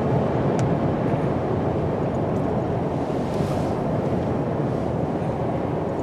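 Steady road and wind noise inside a pickup truck's cabin at highway speed, with a brief rise in hiss about halfway through.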